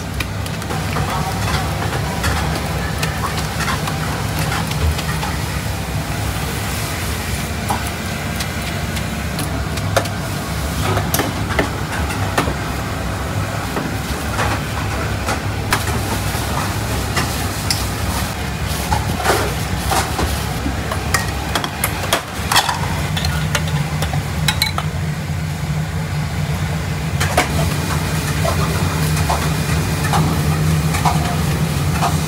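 Stall kitchen noise: a steady low hum with scattered sharp clinks and knocks of metal utensils and bowls as noodles are tossed and served.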